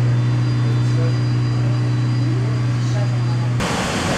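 Steady low hum of a swimming pool's plant-room machinery running at full, with faint voices over it. Near the end it cuts suddenly to a louder, even rushing machinery noise.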